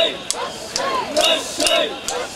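Mikoshi bearers chanting "wasshoi" in unison, a loud rhythmic crowd chant of many men's voices repeating steadily, with short sharp accents in time with the chant.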